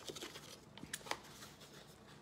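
Faint handling sounds: a few light clicks and scrapes of a plastic selfie stick being pushed into its cardboard box.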